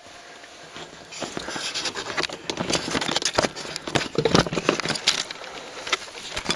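Irregular rustling, crackling and snapping of brush and twigs, building up about a second in and running on as a dense patter of small clicks.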